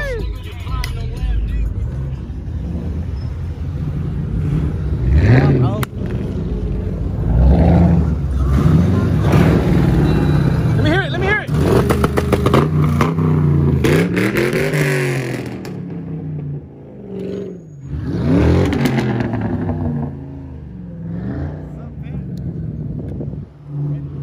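Car engine running with a steady low rumble, under indistinct voices and laughter.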